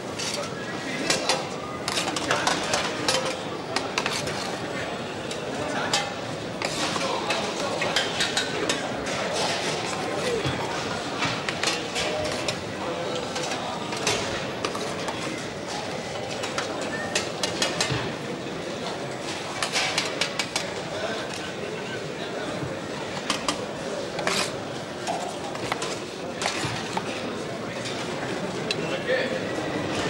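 Metal serving spoons and ladles clinking and clattering against stainless-steel serving trays, in frequent irregular knocks over an indistinct hubbub of voices.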